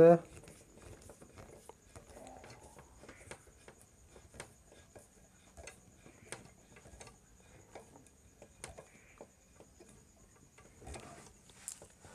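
Faint, irregular small clicks and ticks of a long screwdriver working the clamp screw of a CRT television's deflection yoke, tightening the yoke firmly onto the picture-tube neck. A faint steady high whine runs underneath.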